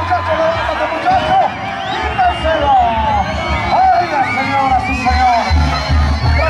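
Band music playing, a melody of gliding, curving notes over a low tuba-like bass line that steps from note to note, with crowd noise beneath.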